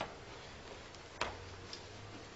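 A quiet room with a few brief, faint clicks, the sharpest a little over a second in, over a low steady hum.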